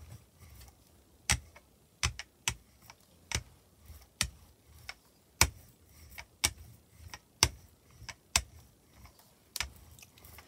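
Rubber brayer rolled back and forth through blue acrylic paint on a gel printing plate, making sharp clicks about once a second, irregularly spaced, as it is pushed and pulled.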